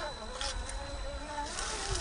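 RC rock crawler's 540 brushed electric motor and geartrain whining, the pitch wavering up and down with throttle and load as it crawls over rock. A couple of brief scrapes come from the tyres on rock and dry leaves.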